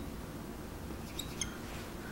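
Dry-erase marker squeaking on a whiteboard as words are marked and underlined, faint, with a few short squeaks a little over a second in.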